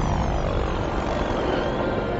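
Helicopter rotor and engine noise in a dense, loud film action sound mix, with a few falling whistles in the first half-second.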